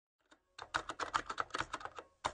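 Computer keyboard typing: a quick run of key clicks, several a second, starting about half a second in, as a typing sound effect for the on-screen time caption.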